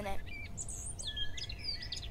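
Several small birds chirping and twittering in quick, short calls, over a low steady background rumble.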